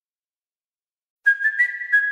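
Dead silence, then a little over a second in a high whistle-like tone begins, holding one note and stepping up once.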